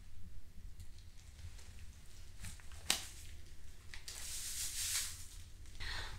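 Quiet rubbery rustling of a latex condom being handled and stretched between the fingers, with a sharp click about three seconds in and a longer hissy rustle a second later.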